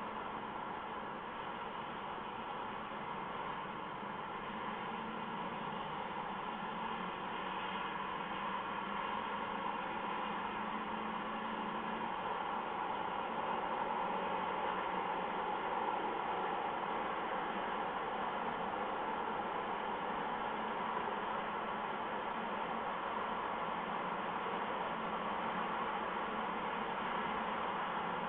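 Steady hiss-like background noise, growing slightly louder over the stretch, with no distinct calls, knocks or other events.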